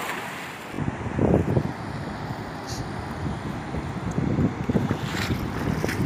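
Wind buffeting the microphone in gusts that start about a second in, over the steady rush of a fast river.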